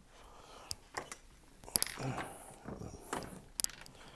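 A few scattered light clicks and clinks of hand handling, with a short mumbled sound about two seconds in.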